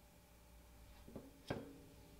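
Quiet room with two short clicks of a hard plastic graded-card slab being handled, the second louder with a brief ring.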